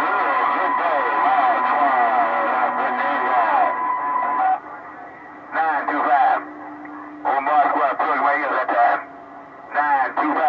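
Voices of distant stations received over an HR2510 radio tuned to 27.025 MHz, too unclear for a transcript to catch, with steady whistle tones running under them. The talk breaks off into quieter receiver hiss three times in the second half.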